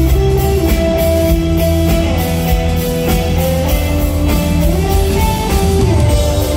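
Live rock band playing an instrumental passage: an electric guitar holds sustained notes that slide between pitches, over a steady bass line and a drum beat.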